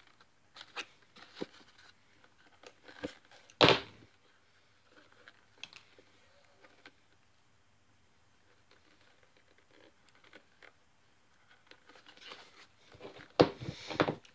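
Hand saddle stitching of a leather holster: thread drawn through the stitch holes of the toe plug and the leather handled, heard as scattered short rasps and rustles, with one louder sharp rasp about four seconds in and another near the end.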